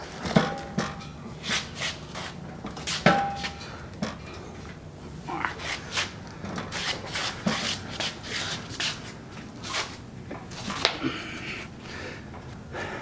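A heavily loaded welding cart, carrying a welder and a gas cylinder, being pushed and dragged into place by hand: irregular rattles, knocks and metallic clanks. Two of the clanks ring briefly, about half a second in and about three seconds in.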